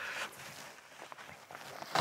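Faint rustling and light knocks of a soft-sided rolling suitcase being handled and set down.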